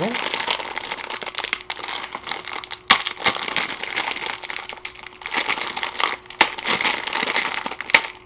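A plastic instant-ramen packet crinkling and crackling steadily as hands squeeze the dried noodle block inside to break it into quarters. A few sharp cracks, about three and six and a half seconds in and again near the end, come from the noodle block snapping.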